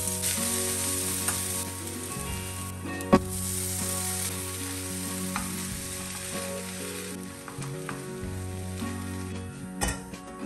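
Red chilli flakes sizzling in hot oil in a stainless steel pan, then a moist green mixture frying as it is stirred in; the sizzle is strongest in the first few seconds and weakens later. A single sharp knock on the pan about three seconds in.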